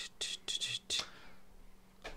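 A man whispering under his breath: a few short, breathy syllables in the first second, then faint room tone.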